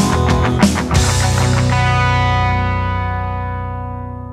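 Rock band with drums and distorted electric guitar playing the song's last bars. About a second in they hit a final chord, which rings on and slowly fades out.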